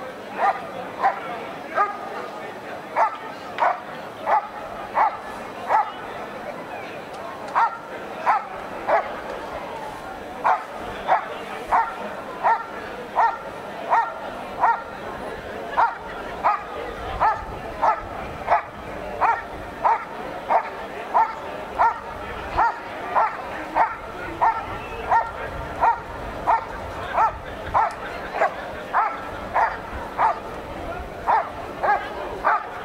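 A dog barks repeatedly and evenly at a helper hidden in a blind, about two barks a second with two brief pauses. This is the hold-and-bark of a protection routine: the dog has found the helper and holds him there by barking.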